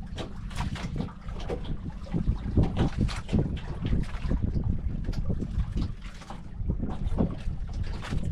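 Wind buffeting the microphone in gusts, with water slapping and lapping irregularly against the hull and outrigger of a bamboo-outrigger fishing boat at sea.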